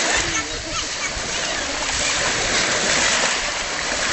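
Sea water splashing and lapping in the shallows, close by, with faint indistinct voices behind it.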